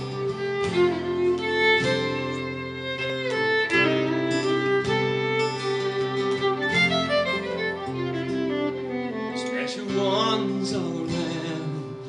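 Acoustic guitar and violin playing together live, the bowed violin holding long melody notes over the guitar accompaniment: the instrumental introduction before the singing starts.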